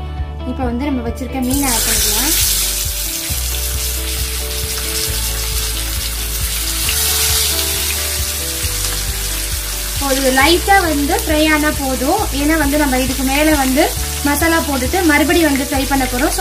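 Masala-coated pomfret fish laid into hot oil in a frying pan: the oil bursts into a sizzle about a second and a half in, then fries steadily. Background music with singing plays throughout, with the vocals coming forward again from about ten seconds in.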